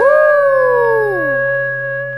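A cartoon wolf's howl: one long call that swoops up at the start and then slowly falls away, over a held music chord that gradually fades.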